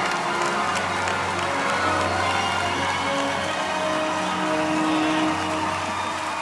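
Audience applauding and cheering in a theatre, with music holding sustained chords underneath.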